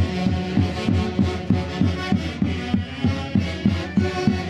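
Live Santiago folk music from a street band of saxophones and harp, a sustained reedy melody over a steady low beat about three times a second.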